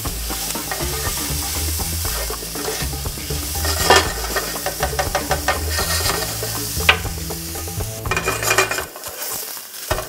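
Maitake (hen of the woods) mushroom pieces and garlic sizzling in olive oil in a nonstick frying pan over high heat, stirred with a spatula that scrapes and taps against the pan a few times. The sizzle quietens near the end.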